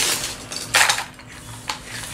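Small wooden alphabet letters clattering against each other and the tabletop as they are gathered up by hand: two short bursts of clatter, the second just under a second in, and a light tap near the end.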